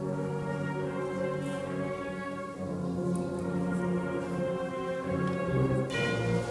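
Bugle-and-drum band (cornetas y tambores) playing a march, the bugles holding long sustained chords that shift to new notes a few times.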